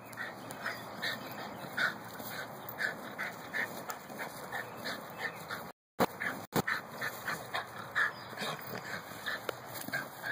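Miniature pinscher barking in short, rapid, high-pitched yaps, about two or three a second, while harassing a groundhog. The sound cuts out briefly about six seconds in, followed by two sharp clicks.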